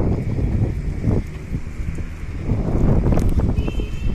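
Wind buffeting the microphone, a loud uneven low rumble that swells and drops in gusts.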